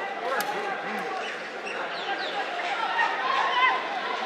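Several voices calling out and chattering at once around a football pitch during play, none clearly worded, with a couple of sharp knocks, near the start and about a second in.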